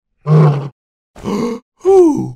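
A man's short wordless vocal noises: three grunts, the last with a falling pitch.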